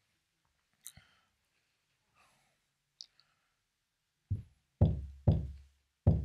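Lapel microphone being handled and adjusted: a few faint clicks, then four heavy, low thumps close together in the last two seconds as the mic is knocked about.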